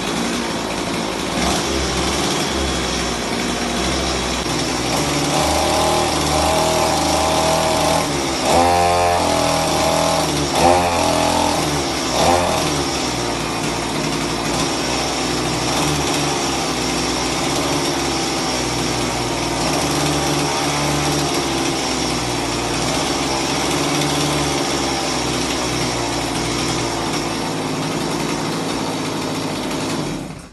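Chainsaw engine sound from a toy chainsaw held to a man's head as a mock hair clipper, running steadily with a few short revs about nine to twelve seconds in.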